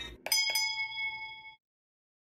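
A bell-like chime sound effect: two quick strikes about a quarter of a second apart, then a ringing tone that fades and cuts off abruptly after about a second and a half.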